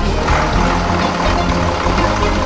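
Scania lorry's diesel engine running as the tractor unit pulls a loaded trailer, heard under background music.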